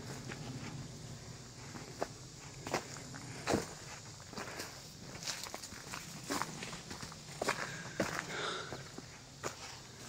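Footsteps of a person walking on a woodland path, a short crunch or scuff every second or so at an uneven pace.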